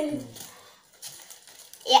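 Faint rustles and light clicks of fried chicken pieces being handled and set down on a paper-covered table, between bits of speech at the start and near the end.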